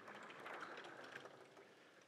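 Faint rubbing of a felt eraser wiped across a chalkboard, fading out about one and a half seconds in.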